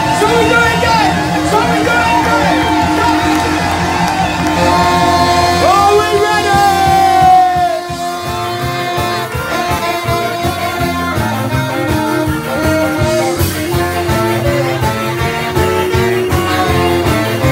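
Live band with a saxophone section and electric guitar playing an upbeat song over a steady pulsing bass beat, with a voice singing. One long note slides downward about six to seven seconds in, and the music drops slightly in level just after.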